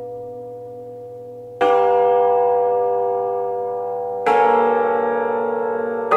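Concert cimbalom: a ringing chord dies away, then two new chords are struck, about a second and a half in and again about four seconds in, each left to ring and fade slowly with a bell-like sound.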